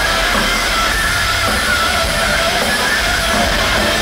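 A heavy metal band playing live without vocals: distorted electric guitars, bass and drums, loud and steady.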